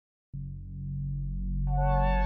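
Synthesized intro music: a low sustained drone swells in after a moment of silence, and higher held tones join it about one and a half seconds in.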